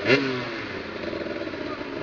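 Motoball motorcycle engines: a brief rev right at the start that falls away, then engines idling steadily.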